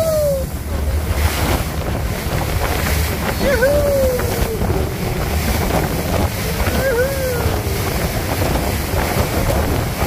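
Tour boat running fast through choppy sea: a steady rush of wind buffeting the microphone and water spray hissing off the hull, over a low rumble.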